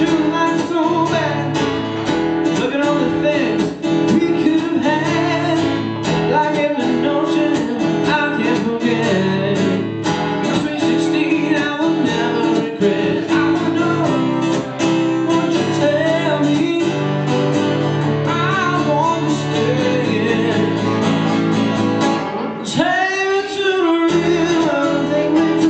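Live acoustic duo playing: guitars over a repeating low riff, with singing and bending, wavering melodic lines above. A long wavering high note rises near the end.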